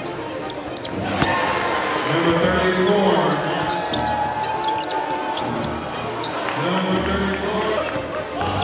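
Live basketball game sound: a ball bouncing on a hardwood court, with short sharp knocks throughout. Indistinct voices rise in the hall a couple of seconds in and again near the end.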